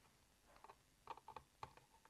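Near silence, with a few faint, short clicks about midway: a hand screwdriver driving small screws through a plastic box cover into threaded pillars.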